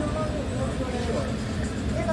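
Steady low rumble of a moving bus heard from inside the cabin, with people talking indistinctly over it.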